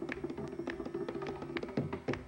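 Solo mridangam in a Carnatic thani avartanam: rapid strokes on the tuned right head, ringing at a steady pitch. Near the end comes a deep bass stroke on the left head, its pitch bending.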